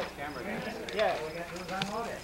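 Men's voices in conversation, with a few short knocks.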